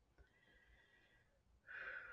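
Near silence with a soft breath, a quiet sigh, near the end as a person gathers her thoughts before speaking.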